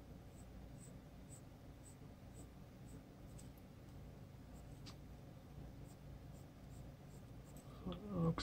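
Prismacolor dark umber colored pencil drawn lightly over paper in short strokes, a faint scratching repeating about twice a second.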